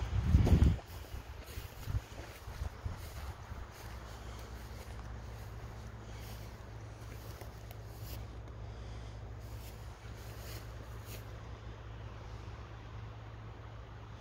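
Wind rumbling on a phone's microphone, with a heavier gust of buffeting in the first second and a steady low rumble after it, and faint rustles over it.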